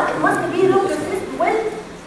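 Speech only: a woman lecturing, her voice rising and falling in pitch.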